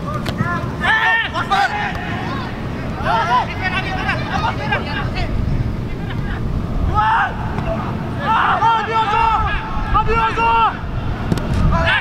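Footballers shouting to one another on the pitch in several loud, high-pitched bursts, over a steady low rumble.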